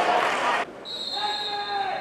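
Pitch-side football match sound: shouting voices over a rush of noise that cuts off abruptly just over half a second in. Then a referee's whistle sounds as a short steady high tone, with a voice calling under it.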